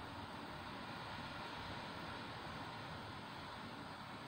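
Strong wind blowing hard, heard as a faint, steady rushing with no distinct gusts or knocks.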